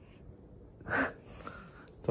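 A single short breathy huff of air about a second in, otherwise quiet.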